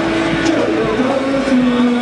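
Live rock band playing loud, with sustained distorted electric guitar chords over bass and drums and a voice singing over the top.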